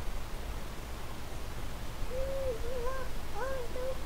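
A toddler making faint wordless whiny hums: a handful of short rise-and-fall notes in the second half.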